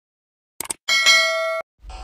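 Subscribe-button sound effect: a quick double mouse click, then a bright bell ding that rings for about half a second and cuts off suddenly.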